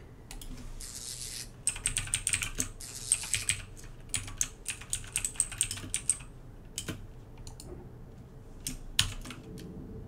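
Computer keyboard typing: a quick run of keystrokes for a few seconds, then a few single key presses later on.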